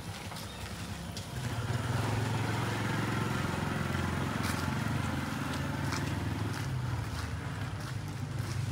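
An engine running steadily, growing louder about a second and a half in and then holding, with faint footsteps ticking over it.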